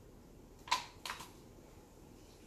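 Plastic squeeze bottle of acrylic paint squeezed over a canvas, giving two short sputtering sounds a moment apart, the first louder.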